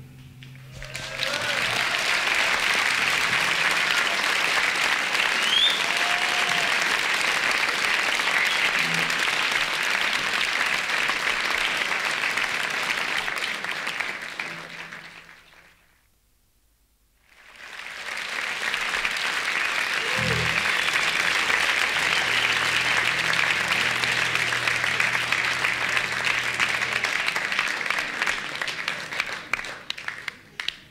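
Live concert audience applauding after a song. About halfway through, the applause fades out to near silence, then fades back in and carries on.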